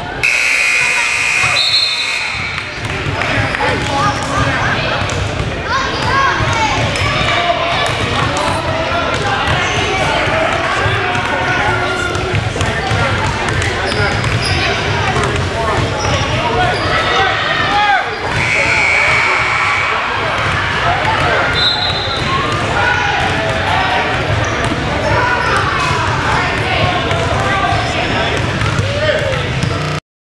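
Gym scoreboard buzzer sounding for about two seconds at the start, ending the period, then a large hall full of children's and parents' voices talking and calling out, with basketballs bouncing on the wooden floor. The buzzer sounds again about 18 seconds in.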